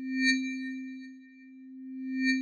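Electronic transition tone for a title card: a steady low hum with thin, bell-like higher tones over it. It swells and fades once, then begins swelling again near the end, pulsing about every two seconds.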